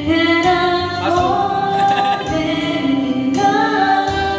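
Karaoke: a voice singing through a microphone over a backing track with a steady beat, holding long notes that slide between pitches.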